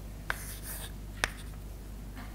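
Chalk writing on a chalkboard: two sharp chalk taps about a second apart, with short scratchy strokes between them.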